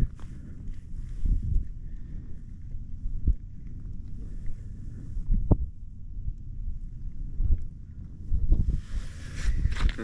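Wind rumbling and buffeting on the microphone, with a couple of small sharp clicks as a small perch is handled and unhooked from the fishing line.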